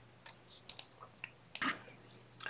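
A few faint, scattered small clicks from the soft copper wire and wire-wrapped pendant being handled in the fingers.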